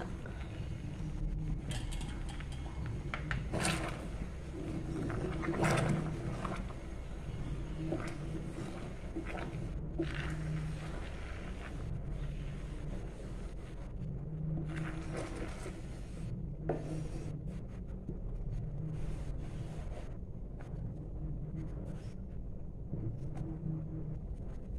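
Coconut milk boiling in a wide pan, a steady low bubbling, with now and then the scrape and knock of a wooden spatula stirring it against the pan.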